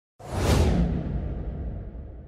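A whoosh sound effect for an animated logo intro, starting suddenly just after the start over a deep rumble. The hiss is loudest in the first half-second and then fades, while the rumble carries on underneath.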